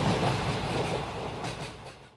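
Train running on rails, with wheels clattering over the track, fading away near the end.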